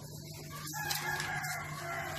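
A rooster crowing once: one long call starting a little before halfway and lasting about a second and a half, its pitch sagging slightly at the end, over a steady low hum.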